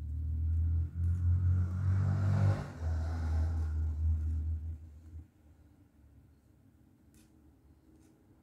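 A motor vehicle's low engine rumble swells, is loudest about two and a half seconds in, and fades away by about five seconds in, as if it is passing by.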